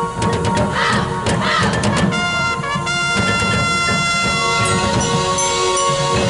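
Marching band playing its field show: a run of sharp percussion hits and crashes in the first two seconds, then the brass holding full sustained chords.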